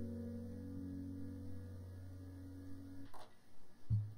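Background music dying away: a held low chord fades out and stops about three seconds in, followed by a faint, brief low note near the end.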